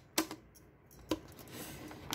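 Two sharp clicks of a thin clear PET plastic bottle being pierced and cut with scissors, one just after the start and one about a second in.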